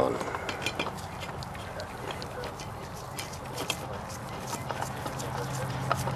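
Small irregular clicks and rubbing as a gloved hand spins a new spin-on oil filter onto its threads by hand. A low steady hum comes in about halfway through.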